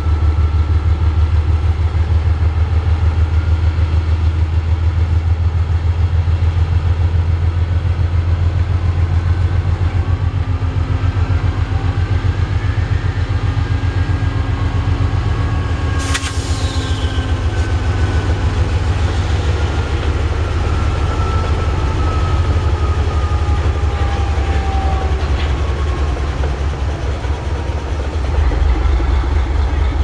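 Norfolk Southern diesel-electric freight locomotive running with a loud, steady low throb. Thin high whining tones glide slowly up and down through the middle, and there is one sharp click about 16 seconds in.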